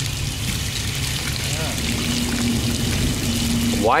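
Water poured onto hot smelting slag and a freshly poured metal bar, splashing and hissing with a fine crackle as it quenches them.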